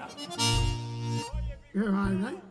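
Accordion sounding a short held chord of under a second, with low bass notes under it. A voice comes back in near the end.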